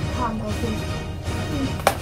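Background music, a short voice early on, and one sharp whack near the end as a toy sword strikes.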